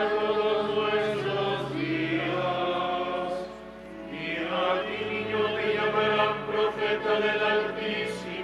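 Slow liturgical chant: voices singing long, held notes that shift pitch every second or two. A steady low accompaniment sounds underneath, with a dip in the singing about halfway through.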